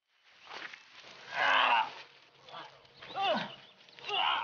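A man's wordless straining cries: a long rough yell, then a shorter one that falls in pitch.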